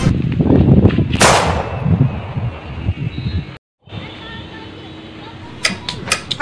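A gunshot sound effect about a second in: one sharp crack with a low rumbling tail. After a brief dropout the sound goes quieter, with a few clicks near the end.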